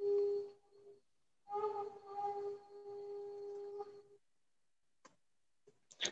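A steady, flute-like pitched tone with overtones, held on one note: briefly at the start, then again for about two and a half seconds before it cuts off.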